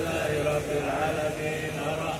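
A large crowd of men chanting an Arabic Islamic devotional chant together in unison, on long held notes.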